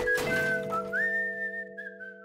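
A cartoon character whistling a casual tune, one clear note that steps and slides between pitches, over held music chords; the whistling fades out near the end.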